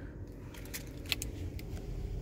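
A few faint, light clicks and rattles of hard plastic being handled at the sliding roll-top cover of a car's centre-console storage bin, over a low steady hum.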